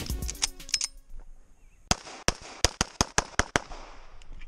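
Background music fading out in the first second, then a rapid string of about ten pistol shots from a Sig Sauer 1911 MAX in .40 S&W, starting about two seconds in and lasting under two seconds.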